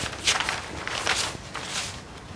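Loose sheets of paper rustling as they are handled and turned over, in a few short bursts.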